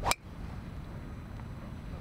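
A golf driver striking a teed ball off the tee: one sharp crack of impact just after the start, then only a low background rumble.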